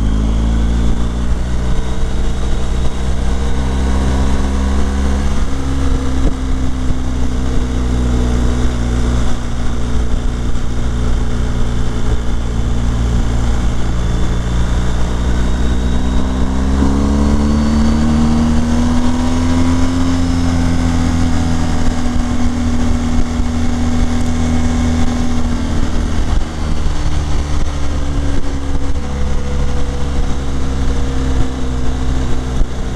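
BMW R 1250 GS HP's boxer-twin engine running under way, heard from the bike itself, over wind noise. The engine note shifts in steps a few times and rises smoothly for several seconds from about sixteen seconds in as the bike accelerates.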